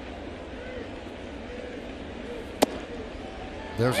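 Steady ballpark crowd murmur, then a single sharp pop about two and a half seconds in as the pitched baseball hits the catcher's mitt for a strike. A commentator's voice starts near the end.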